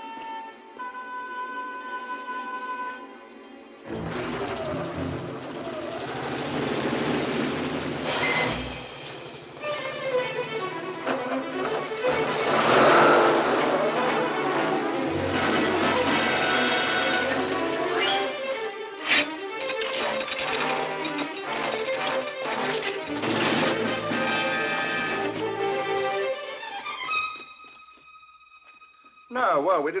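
Film score music: quiet held notes for the first few seconds, fuller and louder music from about four seconds in, thinning to a single quiet held note near the end.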